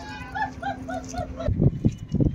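A quick run of five short, evenly spaced pitched animal calls, about five a second, followed by several loud low thumps near the end.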